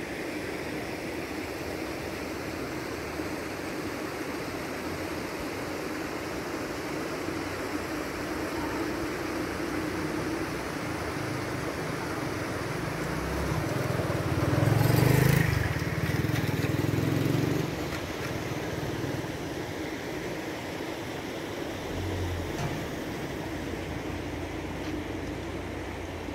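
Steady engine and road noise of a moving vehicle, swelling louder for a few seconds around the middle, with a single sharp knock at the loudest point.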